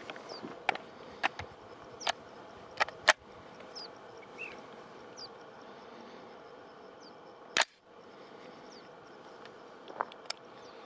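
Metal clicks and clacks of an AR-style rifle being handled, the magazine being seated and the action worked: several quick clicks in the first three seconds, the sharpest about three seconds in, and one more loud clack a little past seven seconds.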